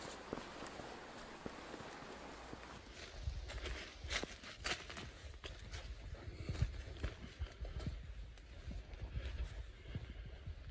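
Footsteps crunching through dry leaves and twigs on a forest trail, irregular steps with a low rumble on the microphone. Before the steps there is a steady hiss for about three seconds.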